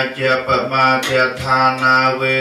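Buddhist Pali chanting by male voices in unison, recited on a nearly steady low pitch with a continuous syllable-by-syllable flow.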